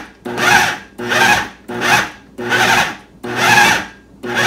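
KitchenAid food processor pulsed five times in quick succession, each short burst of motor whine mixed with the thick oat-and-flour dough churning against the bowl, about 0.7 s apart. It is being pulsed to bring the mixture together into a ball.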